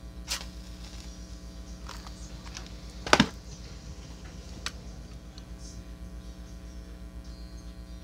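A wooden kitchen match struck on the side of its box: one short, loud scratch about three seconds in as it catches. A few light clicks of the matchbox being handled come before it, and a steady electrical hum runs underneath.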